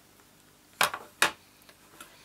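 Two sharp plastic clicks, about half a second apart and a little under a second in, as a Stampin' Up! ink pad's hard plastic case is handled, opened and set down on the table.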